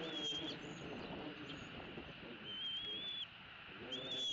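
Bald eaglet calls: thin, high whistles, one at the start and a longer, slightly wavering one about two and a half seconds in, while the eaglets are being fed.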